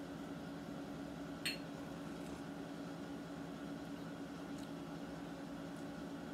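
Quiet room tone with a steady low electrical hum, and one short click about a second and a half in.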